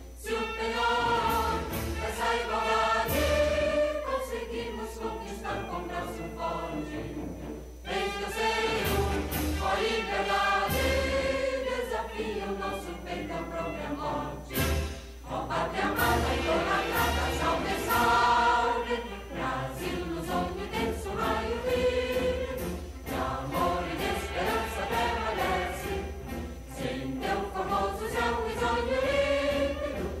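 A recorded anthem sung by a choir, played over loudspeakers in a council chamber.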